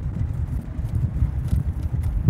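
Low, steady rumble of a truck's engine and tyres heard from inside the cab while driving.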